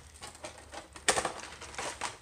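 Objects being handled on a tabletop: light rustling and tapping, with one sharp click about a second in.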